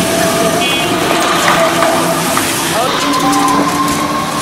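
Several people's voices talking and calling over one another, some holding drawn-out calls, over busy outdoor background noise.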